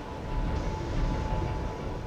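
Ocean waves breaking against coastal rocks: a steady, low wash of surf noise.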